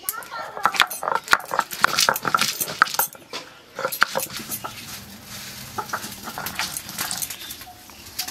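Garlic cloves and green chillies being crushed with a stone roller on a flat grinding stone (sil-batta): rapid cracking and crunching for the first four seconds, then a steadier rubbing of stone on stone as the paste is ground.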